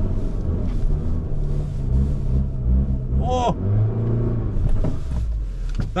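Small hatchback's four-cylinder engine working hard under load while the car climbs a steep grassy hill, its revs sinking in the second half as the car runs out of momentum and fails to make the climb. A brief shout is heard about halfway through.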